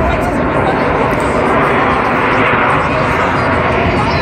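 Aermacchi MB-339 jet formation passing overhead: a loud, steady jet roar, with voices of onlookers underneath.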